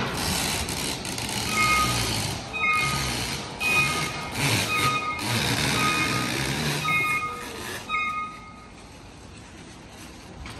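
Reversing or travel alarm of a works vehicle beeping repeatedly, roughly three beeps every two seconds, over the running engine and machinery noise. It starts about a second and a half in and stops near the end.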